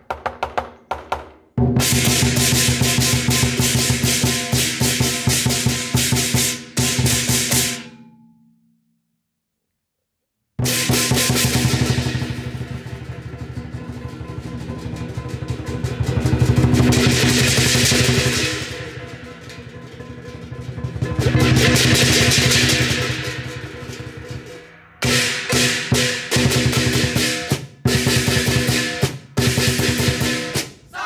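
Lion dance percussion: a large Chinese lion drum beaten with two sticks in fast rolls and strokes, with clashing brass cymbals ringing over it. The music fades and drops to silence about eight seconds in, comes back about two seconds later, and swells up twice in long rolls before breaking into sharp separate hits near the end.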